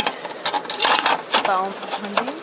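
Muttered speech with a couple of sharp plastic knocks as a hive-top feeder is set down and handled on the hive, over the steady hum of honeybees.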